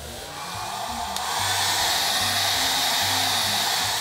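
Handheld hair dryer blowing steadily on its fan, drying a fresh layer of acrylic paint on a foam prop so the next layer can go on top. It swells in loudness over the first second or so, then holds.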